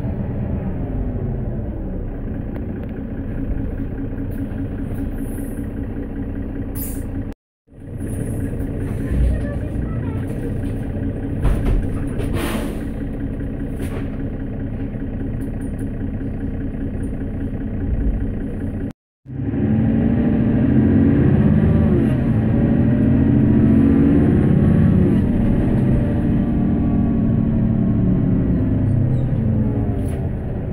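Interior sound of a Mercedes-Benz Citaro bus on the move: its OM457LA straight-six diesel engine running, with a few short knocks in the middle. After a brief dropout about two-thirds in, the engine gets louder and its pitch rises and falls as the bus accelerates. The sound also cuts out briefly about a third of the way in.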